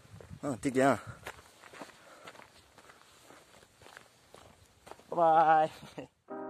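Faint footsteps of a person walking on a dirt path, irregular soft steps.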